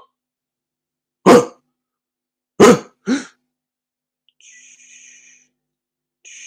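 A man's voice in free vocal improvisation: three short, loud, cough-like barks, each falling in pitch, the last two close together. About four seconds in comes a quieter breathy hiss lasting about a second.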